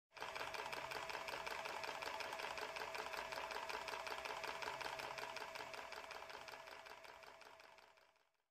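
Small mechanical blacksmith automaton running, its mechanism clattering in a rapid, even rhythm with a faint steady whine under it, fading out over the last two seconds.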